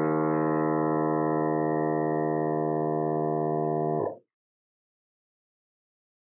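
Milwaukee M18 cordless tire inflator's compressor running steadily, pumping up a bicycle tire, then shutting itself off abruptly about four seconds in on reaching its set pressure.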